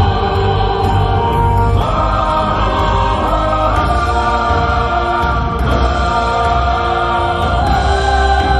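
Choral music: a choir singing held chords over an accompaniment with a steady bass, the chord changing about every two seconds.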